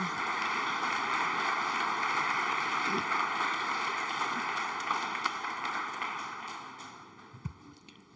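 Audience applauding, steady at first and then dying away over the last few seconds.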